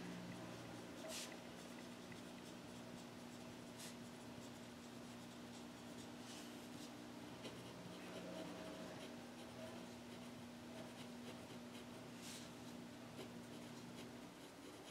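Faint scratching of a pencil writing on paper in short strokes, over a low steady hum.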